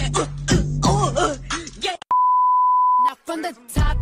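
Music with vocals stops abruptly about halfway through and is replaced by a single steady beep, a censor-style bleep lasting about a second. A brief voice follows, and the music starts again just before the end.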